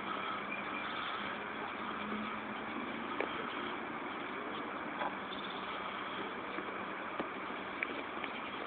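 Steady outdoor background noise with a faint low hum, broken by a few faint ticks from tools being handled.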